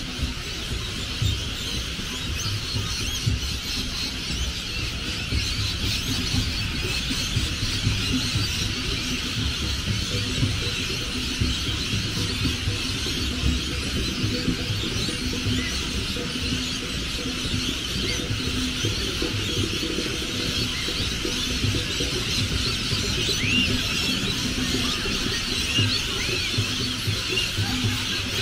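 A dense, continuous chorus of many birds screeching and chattering in the trees, over a low, steady rumble.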